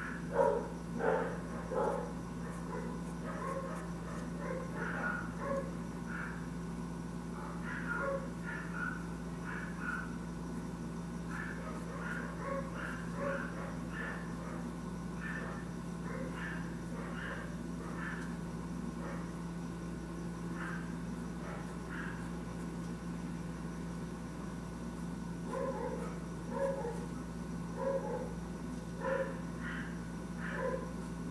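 Short animal calls repeating irregularly in the background, more of them at the start and again near the end, over a steady low hum.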